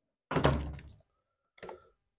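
Two plastic thunks as the pleated paper air filter is pulled out of a Honda GCV160's plastic air-filter housing: a louder one about a third of a second in that dies away over half a second, and a short one near the end.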